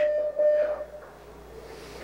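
A single steady tone lasting just under a second, then faint room tone.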